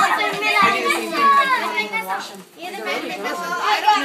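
Many young children talking and calling out over one another at once: loud, overlapping chatter of a group of kids.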